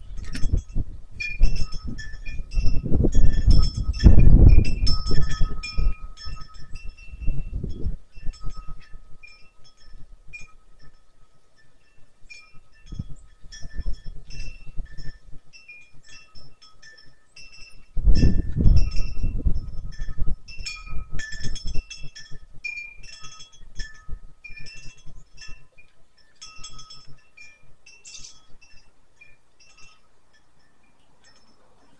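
Wind chimes ringing irregularly, a few fixed pitches struck at random. Gusts of wind buffet the microphone for the first several seconds and again a little past the middle, loudest of all.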